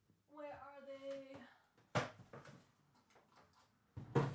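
A woman's voice faintly humming or singing a couple of held notes away from the microphone, followed by a single sharp knock about two seconds in and some faint handling sounds.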